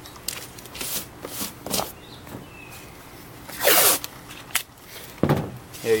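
Blue painter's masking tape being pulled off the roll and torn, with hands rubbing it down onto the masking paper: a handful of short rasping pulls and rubs, the longest and loudest about four seconds in.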